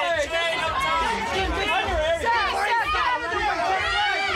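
Several voices calling out and talking over one another at once, a steady chatter of people shouting to someone posing for photographs.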